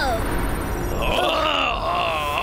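An animated male character's short cry at the start, then a longer strained, wavering groan from about halfway in, over a steady low rumble.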